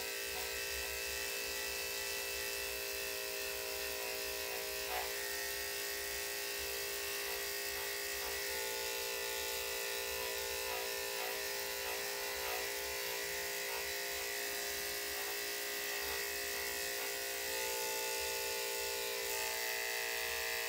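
Electric dog-grooming clipper with a #10 blade running at a steady hum while it cuts fur around the tail.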